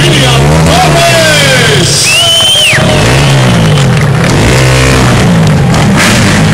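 Several dirt-bike engines revving up and down together, loud, inside a steel mesh globe of speed, their pitch rising and falling over and over as the riders circle.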